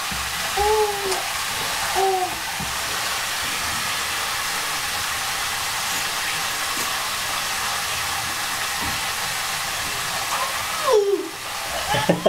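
Steady hiss of running water from a bathtub tap or hand shower. A voice sings a few short syllables near the start and one falling note near the end.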